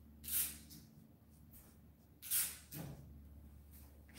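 Two short, hissing breaths through the nose, about two seconds apart, over a faint steady room hum.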